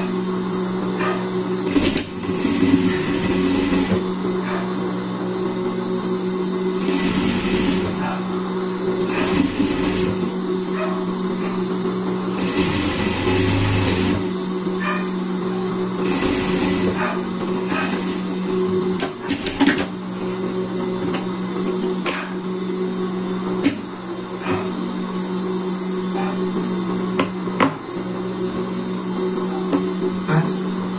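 Industrial single-needle sewing machine stitching a seam in several short runs of a second or two, with pauses between, over a steady low hum. Sharp clicks of handling come later.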